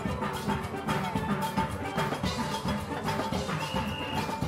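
Steelband music with drums and percussion, played with a quick, steady beat.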